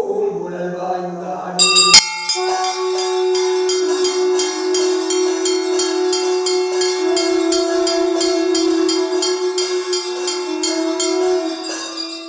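Brass hand bell rung rapidly and continuously during a temple aarti, starting with a sharp strike about two seconds in and ringing on over a steady low drone. A short stretch of chanting comes before the ringing begins.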